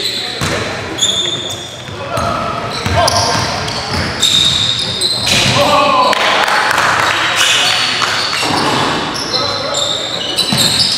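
Basketball game sounds in a reverberant gym: a basketball bouncing on the hardwood floor, short high sneaker squeaks, and players' voices calling out.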